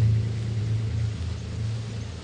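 A deep, low rumble with a steady low pitch that swells at the start and slowly fades.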